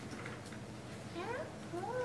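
Quiet room tone, broken near the end by two short whiny vocal sounds that each rise and then fall in pitch, like a meow.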